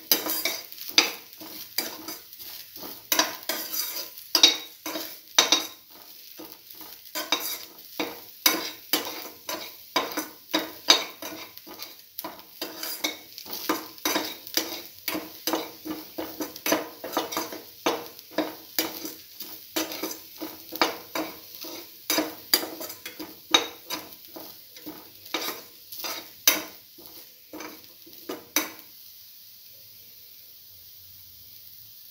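A utensil stirring and scraping against a frying pan as chopped shallots, ginger and garlic sauté in oil, in quick repeated strokes about two to three a second over a steady sizzle. The stirring stops shortly before the end, leaving only the faint sizzle.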